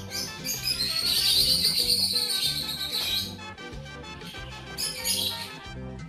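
Background music with birds chirping over it, the bird calls loudest from about one to three seconds in.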